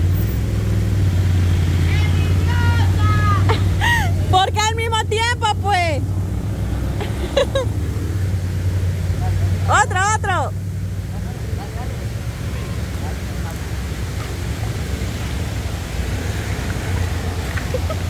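Small motorcycle engines running at idle, a steady low drone, while several people call and shout out a few times near the start and once about ten seconds in.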